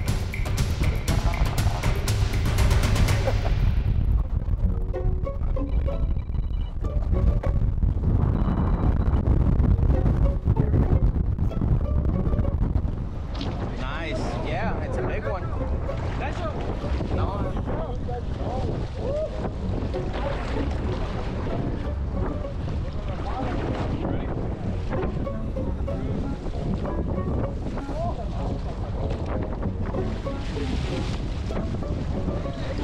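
Wind buffeting the microphone and sea water washing around a boat, with background music under it; the sound is louder for about the first dozen seconds, then drops and settles.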